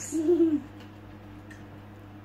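A person's short low vocal hum, its pitch rising a little and then falling. It stops about half a second in and leaves a quiet, steady low hum in the room.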